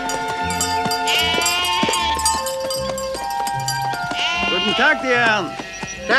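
Background film music with held notes, over a flock of sheep bleating, the bleats coming thicker and louder in the last two seconds.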